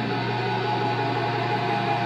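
Live band's noise passage: held electronic drone tones over a hiss and a steady low hum, with no beat or strummed notes.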